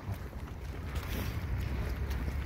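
Wind buffeting the handheld camera's microphone: a steady low rumble, a little louder from about a second in.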